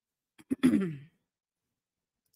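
A woman briefly clearing her throat, once, about half a second in, the sound falling in pitch.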